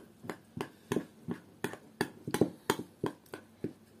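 A metal teaspoon stirring thick purée and rolled oats in a small glass bowl, clinking against the glass in a run of irregular clicks, about three a second.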